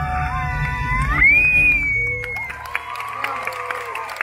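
A show song ends on a rising, held final note over the backing music, and as the music dies away about halfway through, the audience cheers and applauds.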